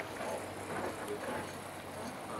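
Steady low hum of a river cruise boat's engine, with faint voices in the background.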